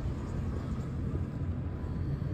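Steady low rumble of road vehicle noise.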